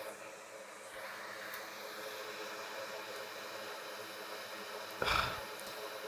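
Faint, steady background hiss of a workbench room with no clear single source. A brief, soft burst of noise about five seconds in.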